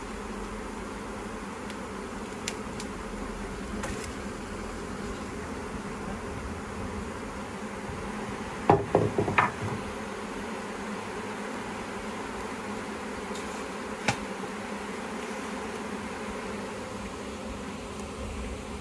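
Honeybee swarm buzzing, a dense, steady hum. About nine seconds in there is a brief cluster of knocks and rustling, and a single sharp click comes a few seconds later.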